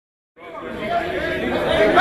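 Crowd chatter: many people talking at once, fading in after a brief silence at the start.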